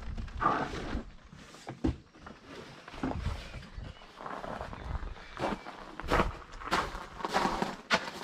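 Footsteps on gravel and the handling of a cardboard box of tiles being carried and set down, with a sharp knock just before the end.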